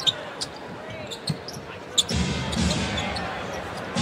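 Basketball arena sound during live play: the crowd's general noise, with a few sharp knocks of the ball bouncing on the hardwood court. The crowd noise grows louder about halfway through.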